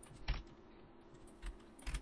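Computer keyboard being typed on: a few separate keystrokes, the loudest about a third of a second in, then a couple more near the end.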